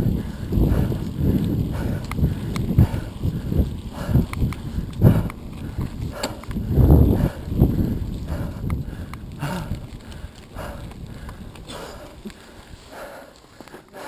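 Mountain bike being ridden along a trail: tyres running over the surface, with scattered knocks and rattles from bumps and an uneven low rumble of wind on the microphone. It gets quieter over the last few seconds.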